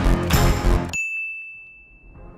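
Background music with a heavy beat stops abruptly about halfway through. It ends on a single high chime, a ding, that rings on and slowly fades.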